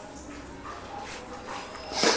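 A dog whimpering faintly, with a sharp, much louder sound breaking in right at the end.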